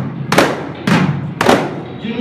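Three loud strikes on hand-held frame drums (daf), played together about half a second apart, each ringing briefly, in a break between chanted lines.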